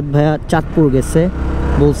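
A man talking while riding a motorcycle, with engine and road noise underneath; in a short pause about a second and a half in, the low engine rumble comes through.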